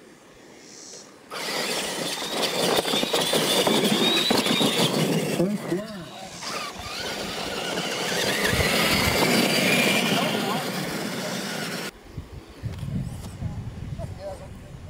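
Electric R/C monster trucks racing off the line on dirt: their motors and gears whine, rising in pitch as they accelerate, over the noise of the big tyres churning dirt. The sound starts suddenly about a second in and cuts off abruptly near the end.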